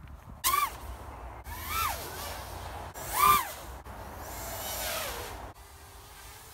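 A 5-inch FPV racing quad with 1805 brushless motors on 6S taking off and flying: its motors and propellers whine up and down in pitch in three quick throttle bursts, the loudest about three seconds in, then a longer falling whine that stops about five and a half seconds in.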